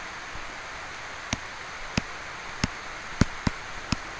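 Steady background hiss with about six sharp, short clicks spread through it: a pen stylus tapping a tablet while digits are handwritten.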